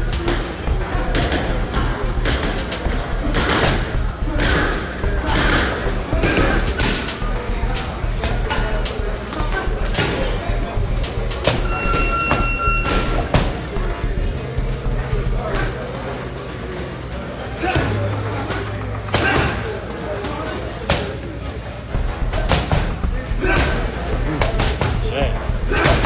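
Boxing gloves smacking against punch mitts in quick flurries of thuds, over background music with a heavy bass beat. A short steady beep sounds about twelve seconds in.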